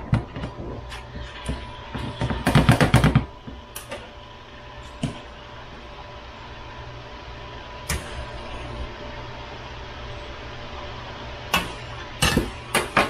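Silicone spatula clicking and scraping against a non-stick frying pan while chicken pieces are stirred, with a quick flurry of clicks about two to three seconds in. After that a steady hiss of the chicken frying carries on, broken by a few single knocks.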